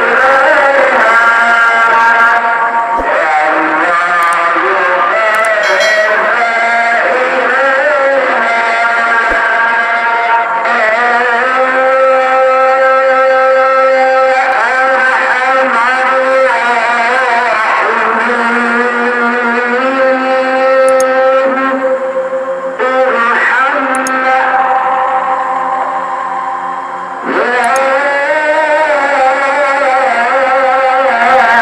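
A solo voice chanting the tarhim, the pre-dawn Islamic call sung from a mosque in Ramadan, in long melismatic phrases of held notes that waver and bend in pitch. A short breath pause comes near the end, and then a new phrase starts.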